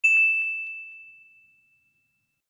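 A single bright, bell-like ding sound effect, struck once and ringing out, fading away over about a second and a half.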